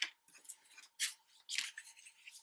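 Sheets of patterned paper and cardstock being handled and slid into place on a tabletop: about four short, faint papery rustles and scrapes.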